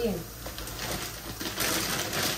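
Dry fusilli pouring from a plastic bag into a metal pot: a rattling patter of many small clicks that grows busier near the end.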